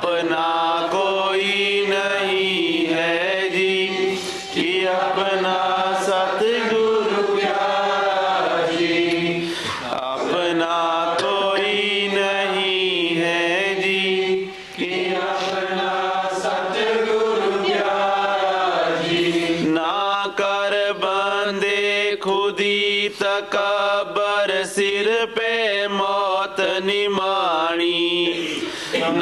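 Devotional chanting: a voice sings a slow melody with long held notes that glide between pitches, pausing briefly now and then.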